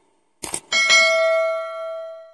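Two quick mouse-click sound effects, then a bright bell ding that rings on and slowly fades: the click-and-notification-bell sound effect of a subscribe animation.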